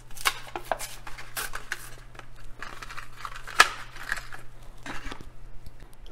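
A Hot Wheels blister pack being opened: the plastic bubble and cardboard backing card crackle and tear in a run of irregular crinkles and clicks, with one sharp snap about three and a half seconds in.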